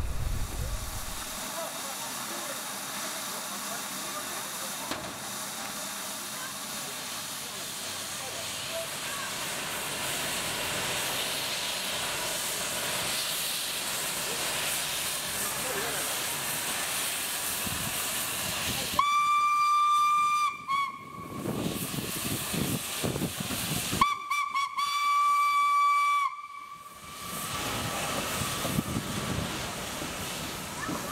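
Steam locomotive hissing steadily, then sounding its whistle in two long, single-pitched blasts: the first about two seconds long, and after a pause of about three seconds, a second one slightly longer.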